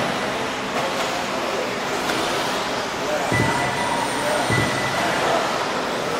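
Radio-controlled off-road cars racing on an indoor dirt track: a steady hiss of motors and tyres, with thin high whines that come and go.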